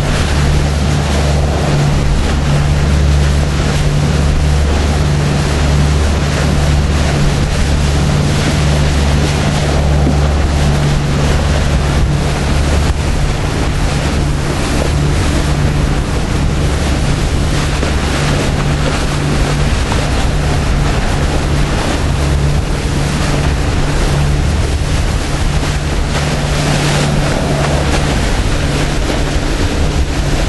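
A sportfishing boat's engines running hard at speed, a steady low drone, over the rush of the wake churning behind the stern and wind buffeting the microphone.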